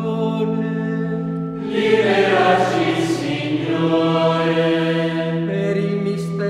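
Background music: a choir chanting over a steady low drone, the sound growing fuller for a couple of seconds near the middle.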